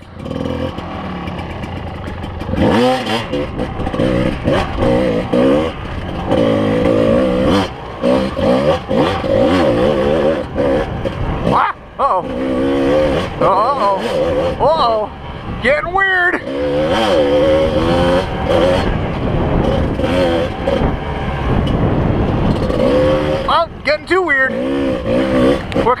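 Kawasaki KDX220's single-cylinder two-stroke engine pulling a dirt bike along a trail. The engine revs up and drops back again and again as the throttle opens and closes and gears change.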